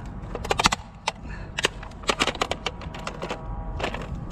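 Plastic Swiffer mop being wrenched apart: a rapid, irregular run of sharp plastic clicks and cracks as the mop head is held down underfoot and the handle is forced off it.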